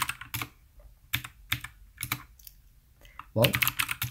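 Computer keyboard keystrokes: about a dozen separate key clicks, irregularly spaced, as a terminal command is typed and entered.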